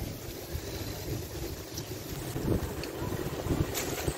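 Wind buffeting a phone's microphone outdoors, an uneven low rumble that rises and falls.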